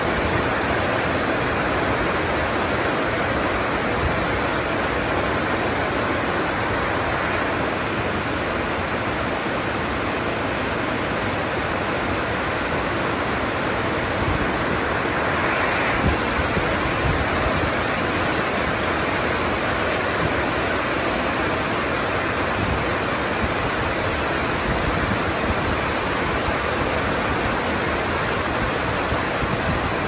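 Heavy rain from an incoming typhoon falling in a steady, dense downpour, with the wind gusting through it.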